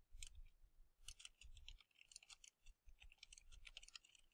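Faint typing on a computer keyboard: a rapid, irregular run of key clicks.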